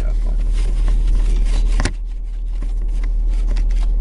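Handheld camera being moved and repositioned, with fabric rustle and small clicks over a steady low hum, and one sharp click a little under two seconds in.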